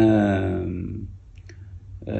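A man's voice holding one drawn-out, falling syllable for about a second as it trails off, followed by a faint click about a second and a half in.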